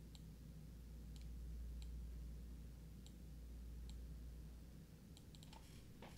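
Faint clicks at a computer: about five single clicks spread a second or so apart, then a quick run of four or five near the end, over a low steady hum.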